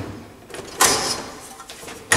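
Plastic front door of a VESDA-E smoke detector clacking as it is fitted back on its hinges: one sharp knock just under a second in that trails off over about half a second.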